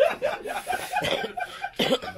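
Men's voices chattering and laughing close by, with one short cough near the end.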